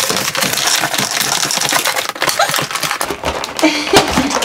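Cardboard and plastic toy packaging being cut and pulled apart with a knife: a dense run of rapid clicks, snaps and crackles.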